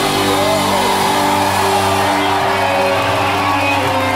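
Live punk rock band playing a sparser passage: electric guitars and bass hold sustained notes with little cymbal or drum.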